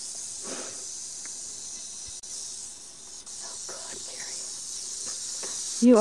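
Rattlesnake buzzing its rattle in a steady high-pitched hiss as a warning, disturbed by a stick poked into its rock pile.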